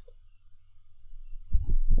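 A few soft computer mouse clicks over a low steady hum.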